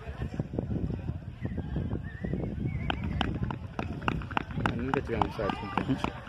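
Wind rumbling on the phone microphone at an outdoor football match, with indistinct voices. About halfway through, a quick run of sharp taps or claps starts, roughly four or five a second.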